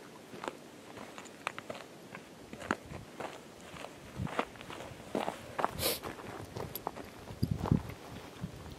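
Hiking footsteps crunching and scuffing on loose stones and gravel on a steep descent, coming unevenly. A few heavier thumps come near the end.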